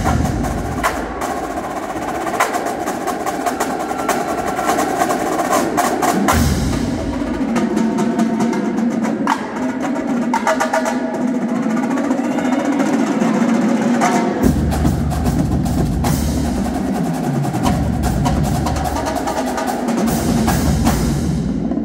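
Marching drumline playing a fast cadence: rapid snare-drum and tenor-drum strokes with cymbal crashes. Deep bass-drum strokes drop out for most of the first part and come back in strongly about two-thirds of the way through.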